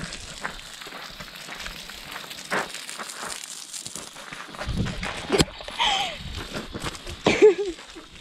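Water from a garden hose spraying onto a person at close range, a steady hiss with scattered spatters. In the second half come a sharp knock and a couple of short, high vocal squeals that slide in pitch.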